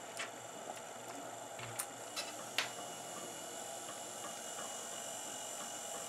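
Faint, steady running of an Allen Bradley 855BM-ARA24 rotating beacon's small 24-volt rim-drive motor, turning the light turntable at low speed, with a few faint ticks in the first three seconds.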